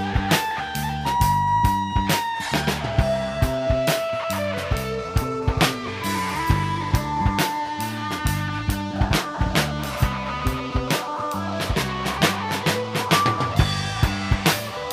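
A live rock band playing an instrumental passage with no vocals. A drum kit keeps a steady beat under bass, while a lead line plays long held notes that bend slightly in pitch.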